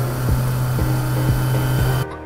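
Children's cartoon music with a regular beat about twice a second, overlaid by a steady humming, hissing machine-like sound effect that cuts off suddenly at the end.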